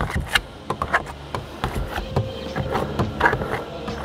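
Tint squeegee (a bulldozer) pushed across wet window film on a car's rear glass, working the slip solution out: a series of short rubbing strokes and clicks, with a few brief squeaks about three seconds in.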